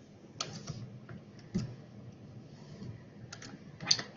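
A few quiet, irregularly spaced computer keyboard keystrokes and clicks.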